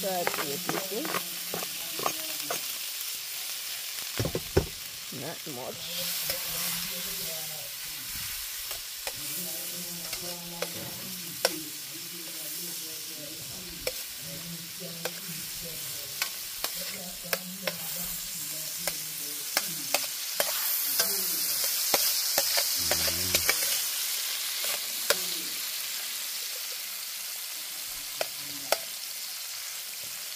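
Onion and spring onion sizzling in hot fat in a steel frying pan while a metal spoon stirs and scrapes them, with many sharp clicks of spoon on pan. The sizzle gets louder about six seconds in and is loudest a little past the middle.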